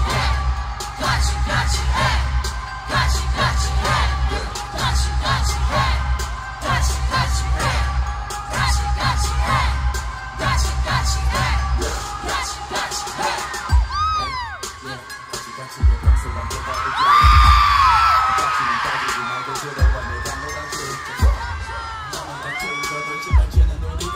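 Live K-pop concert music over an arena PA, heard from within the crowd: a heavy, steady bass beat with a synth melody. About 14 seconds in the beat drops out, leaving fans screaming and whooping over a few isolated bass hits.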